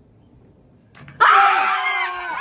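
A quiet first second with a faint click, then a woman's loud, long, high-pitched scream of excitement as her thrown ring lands on a cone in a ring-toss game.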